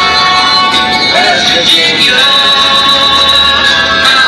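Music with a singing voice over instrumental accompaniment, steady and loud throughout.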